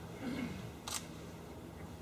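Quiet room tone in a lecture hall with a brief faint murmur, then a single sharp click about a second in.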